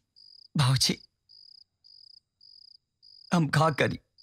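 Crickets chirping, a faint, regular train of short high-pitched chirps just under two a second, as night ambience. A voice breaks in briefly about half a second in and again near the end.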